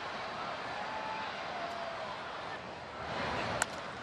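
Steady ballpark crowd murmur, then a single sharp crack of a bat hitting a pitched baseball near the end.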